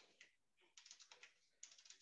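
Faint computer keyboard typing: two short runs of quick key clicks, about a second in and again near the end.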